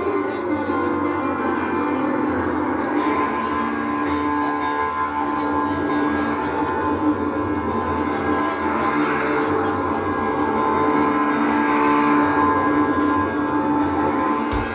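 Live rock band playing a slow, spacey jam with electric guitars and keyboards holding long, ringing notes over drums and bass, heard from the crowd through a camera microphone.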